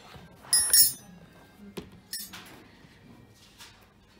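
Short bright clinks of tableware at a dining table: a loud one about half a second in and a fainter one about two seconds in, over a low background murmur.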